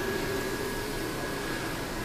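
Steady hum and hiss of a large store's air handling, with a faint steady high whine over it.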